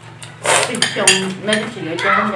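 Dishes and utensils clinking and clattering in a short burst about half a second in, with a person talking over it.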